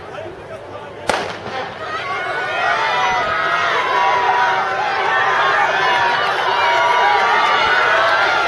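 A starter's pistol fires once about a second in, starting a sprint race. Spectators then cheer and shout, building up and staying loud.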